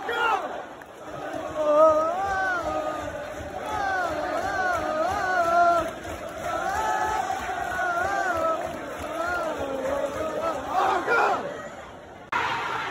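A man close by singing a football terrace chant loudly and badly over the noise of the crowd, his tune rising and falling with a short break midway.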